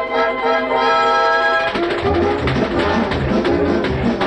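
Orchestral cartoon score led by brass. It holds a chord for about a second and a half, then breaks into a quick rhythmic passage with bass notes and percussion.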